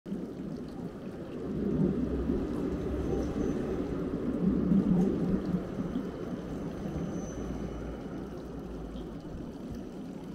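Water from a stone fountain's spouts splashing steadily into its basin. A low rumble swells through the first half and then eases as a tram passes on the street behind.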